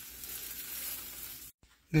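Freshly broiled baked spaghetti casserole sizzling in its hot glass baking dish as a metal spatula lifts out a serving: an even hiss that cuts off abruptly about a second and a half in.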